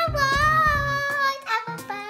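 A young girl singing a long, wavering note over background music with a beat; her voice stops about a second and a half in, leaving the music's melody.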